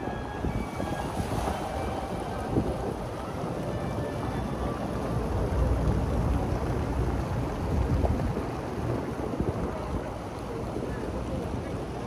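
Rows of fountain jets splashing into a shallow stone basin: a steady rush of falling water, with people talking and street traffic behind it. Wind buffets the microphone with a low rumble midway through.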